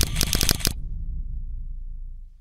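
Logo-animation sound effect: a fast run of sharp clicks, about ten a second, that stops under a second in, leaving a low hum that fades away.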